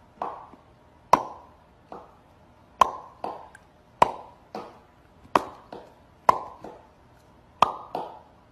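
A series of short, sharp water-drop-like plops, each with a brief ringing tail, irregular: a louder one about every second and a half with softer ones in between.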